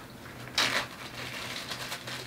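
Clear plastic zip-seal bag crinkling as it is handled, with a short loud rustle about half a second in, then softer crackles.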